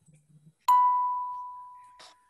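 A single bell-like chime about two-thirds of a second in: one clear ringing note that fades slowly over about a second and a half.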